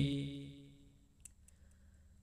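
A man's paritta chanting trails off on a held note in the first moments, then a near-silent pause broken by three faint clicks.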